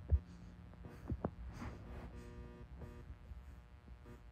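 Faint steady electrical hum with a few soft, low handling thumps: one right at the start and two close together about a second in.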